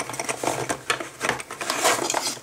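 Cardboard box flaps and inner packaging being opened and handled by hand: an uneven run of scrapes, rustles and small clicks, with a sharper one near the end.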